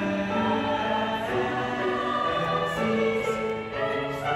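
A mixed choir of teenage voices singing held chords in several parts, moving from one sustained chord to the next; the phrase breaks off briefly just before the end.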